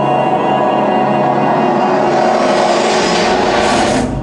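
Film soundtrack of a stormy sea: sustained music under a rushing noise of surf and wind that swells over the last two seconds and cuts off suddenly.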